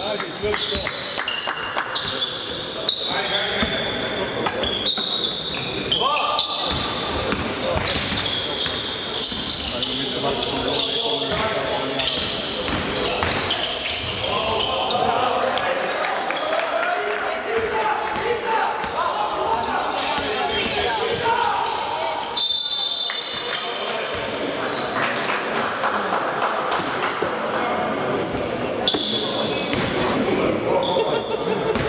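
Basketball game in a large hall: the ball bouncing on the hardwood court with many sharp knocks, short high squeaks of basketball shoes, and players and spectators shouting.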